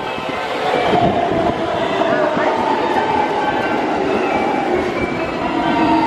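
Red Keikyu electric commuter train arriving at the platform and slowing as its cars pass close by: a steady rumble of wheels on rails with a steady electric motor whine riding over it, a little louder near the end.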